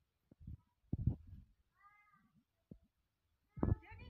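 A single short, high-pitched cry about halfway in, rising and then falling in pitch, with soft knocks and handling noises before it.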